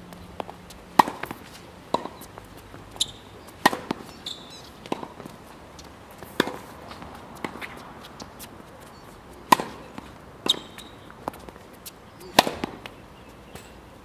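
Tennis ball struck by racquets and bouncing on a hard court during a rally: sharp pops about once a second, the loudest near ten and twelve seconds in. A few short high squeaks fall between them.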